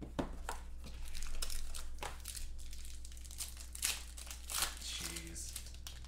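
Plastic wrap on a sealed trading-card box crinkling and tearing under the hands as the box is opened, an irregular run of sharp crackles.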